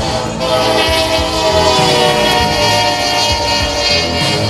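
A Nathan K5HLL five-chime air horn on a GE C40-8W diesel locomotive blasting a loud, sustained chord as the locomotive passes. Its notes drop slightly in pitch, over the rumble of the passing train.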